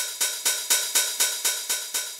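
808-style open hi-hat sample played in a steady run of short, evenly spaced hits, about six a second, each with a brief metallic ring. The hits come at varying MIDI velocities.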